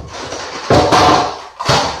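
Knocks and clatter of household objects being handled close to the microphone, loudest about two-thirds of a second in, with a shorter knock near the end.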